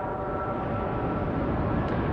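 Steady rumble and hiss of an old recording of a sermon in a hall, during a pause in the speech, with a few faint steady tones that fade out in the first second and a half.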